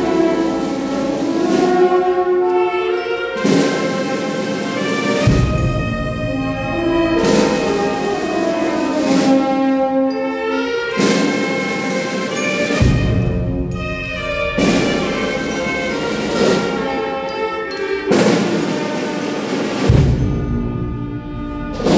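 Brass band playing a slow funeral march: trumpets, trombones and other brass hold sustained chords over a steady drum beat. There is a heavy stroke about every two seconds.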